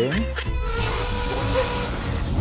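Background music with a long, even hissing whoosh that starts about half a second in and carries a few faint held tones, one rising slightly: an edited-in sound effect over a sepia cut.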